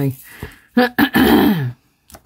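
A man coughing and clearing his throat about a second in: a short cough, then a longer clear that falls in pitch.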